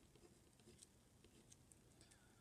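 Faint scratching of a pen writing on paper: a few short strokes in quick succession.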